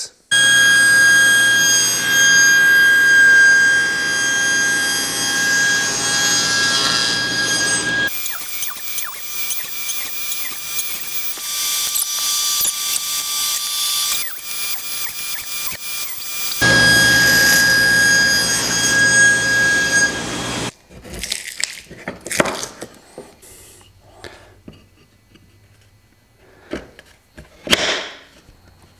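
Table saw running with a steady, high whine while its blade nibbles finger-joint notches into board ends set against a jig; the sound shifts abruptly a few times. Near the end the saw sound gives way to quieter knocks and handling of wood.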